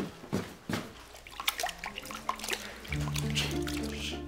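Water splashing and dripping as a floor rag is rinsed in a washroom sink. Background music with held notes comes in about three seconds in.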